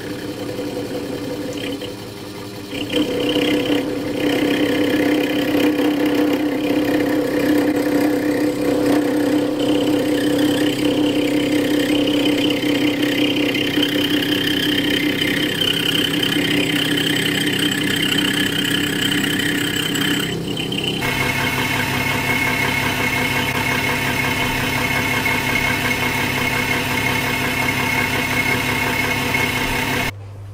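Small Einhell benchtop metal lathe running with a steady motor and gear whine while turning a brass rod. It gets louder about three seconds in, and its tone shifts about two-thirds of the way through.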